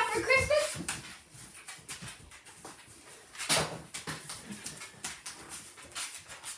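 A pet dog making small sounds close by, with one louder, breathy burst about three and a half seconds in.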